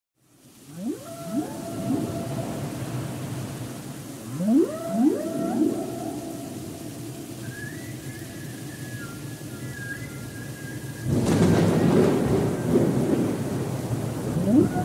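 Whale song: several moaning calls that sweep upward and level off into long held tones, in groups, with higher held tones around eight to ten seconds. About eleven seconds in, a louder rumble of thunder with rain hiss comes in over it.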